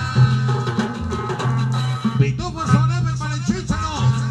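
Peruvian-style cumbia with an electric guitar melody over a steady bass line and drums, the guitar notes bending up and down in the second half.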